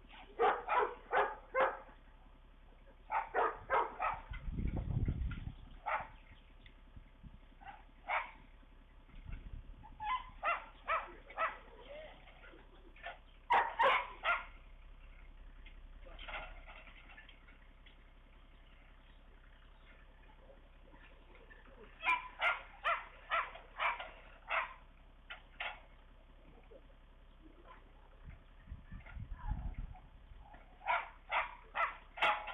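A dog barking in short runs of several barks, about three a second, repeated a few times, with two brief low rumbles between.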